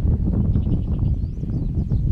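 Wind buffeting the camera microphone: a loud, steady low rumble that flutters in level.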